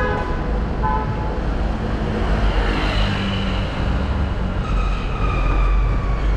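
Busy road traffic with a steady low rumble of engines and tyres. A car horn toots briefly at the start and again about a second in, and faint high tones sound in the second half.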